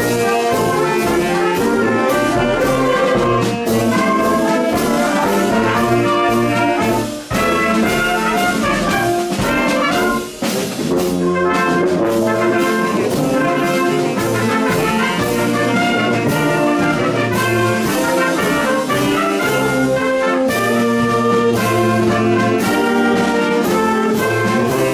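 Marching band of saxophones, trumpets, sousaphone and drums playing a tune over a steady drum beat, with two brief breaks in the music, about seven and ten seconds in.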